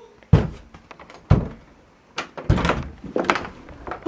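Interior door being banged and shoved: two loud thuds about a second apart, then several lighter knocks and bumps.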